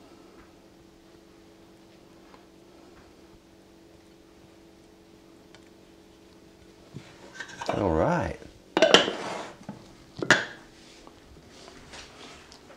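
A table knife scraping butter faintly onto bread over a steady low hum, then metal kitchen utensils clattering about seven seconds in: a grating scrape followed by two sharp clanks about a second and a half apart.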